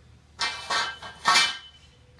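Metal electrical conduit and a hand pipe bender clanking and scraping on a concrete floor. Two short metallic rattles, the second louder, each with a brief ringing note.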